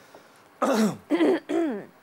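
A person clearing their throat: three short throaty bursts starting about half a second in, the first breathy and the next two falling in pitch.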